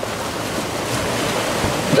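Small lake waves lapping and washing against the rocks at the water's edge, a steady rush of water that swells slightly toward the end.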